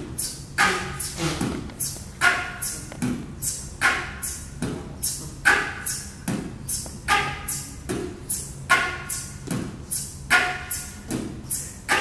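Beatbox flute: a concert flute played with a breathy aeolian tone while the 'boots cats' beatbox pattern is voiced through it, making a steady beat of low kick thumps, hissing hi-hat-like bursts and short airy pitched notes.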